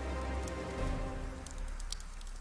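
Fire crackling, with a few sharp pops, over a quiet music bed that fades away.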